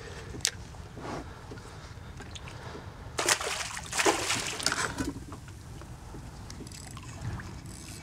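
A hooked sheepshead thrashing at the surface beside the kayak: a burst of splashing about three to five seconds in, with lighter water sloshing before and after.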